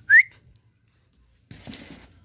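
A single short, rising whistle, a person whistling to call a missing pet parrot. Near the end there is a brief rustling noise.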